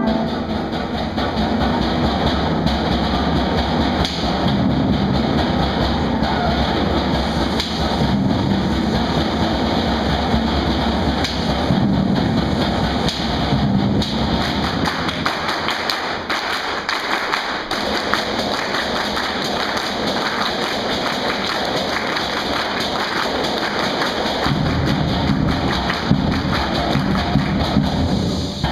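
Student concert band of woodwinds and brass playing a piece, loud and full, with drum strokes running through it.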